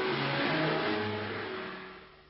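A steady rushing roar with a few low held music notes under it that change pitch during the first second, all fading away near the end.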